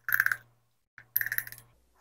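A quarter-teaspoon measure scraping and clicking in a small jar of ground cinnamon as it scoops out spice: two short rattles of quick clicks, the second a little after a second in.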